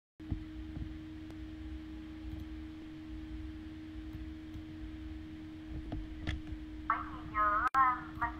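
A steady low hum on an open microphone, with low rumble and scattered faint clicks. A person's voice sounds briefly near the end.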